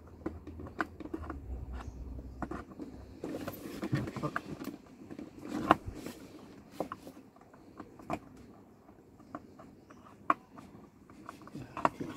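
Scattered plastic clicks, taps and rustling as a power window switch and its wiring are worked into a car door trim panel, with one sharper click about six seconds in.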